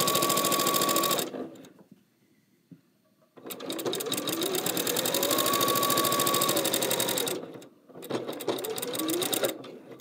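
Electric sewing machine stitching binding onto a quilt in three runs, the motor speeding up and slowing down each time. It stops about a second in, is quiet for about two seconds, runs for about four seconds, pauses briefly, then makes a short last run that stops just before the end.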